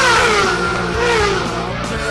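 Racing motorcycle engine at high revs speeding past, its pitch falling as it goes away, over rock music with a steady beat.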